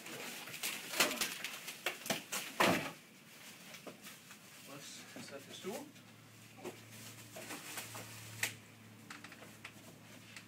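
Plastic wrapping rustling, with knocks and creaks, as a grand piano is tipped from its side up onto its legs, ending in a heavy knock about two and a half seconds in as it comes down; then quieter shuffling and brief words.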